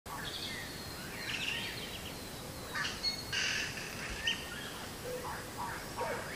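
Birds chirping in short, scattered calls over a steady outdoor background hiss.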